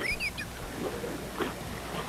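Tortilla chips being chewed, heard faintly over a telephone line, with a few short chirping crackles near the start and a faint click partway through.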